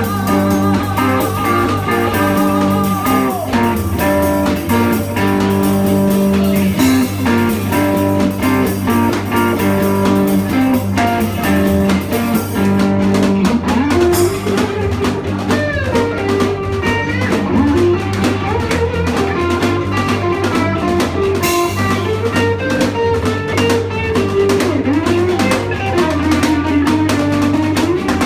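Live rock band playing: electric guitars and electric bass over a drum kit, with steady bass notes and frequent cymbal and drum hits. In the second half a lead line slides and bends in pitch.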